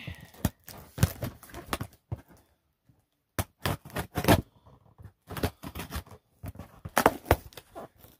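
Cardboard shoebox being pried and pulled open by hand: irregular scrapes, knocks and tearing, with a short quiet pause near the middle.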